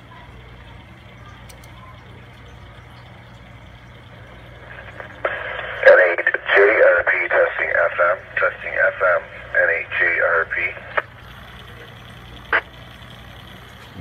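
A man's voice played back over a Yaesu FTM-3200DR 2-metre FM transceiver's speaker, thin and band-limited like radio audio. It is the EchoLink echo test server returning his test transmission, lasting about six seconds from about five seconds in, with faint hiss before and after and a single click near the end.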